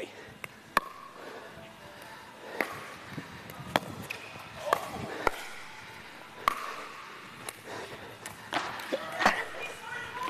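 A pickleball rally: about ten sharp pocks of solid paddles striking the hollow plastic ball, spaced irregularly, with faint voices in between.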